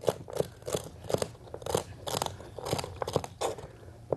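Vegetable cleaver cutting celery into strips on a cutting board: a quick, uneven run of crisp crunches, each with a tap of the blade on the board, about three or four a second.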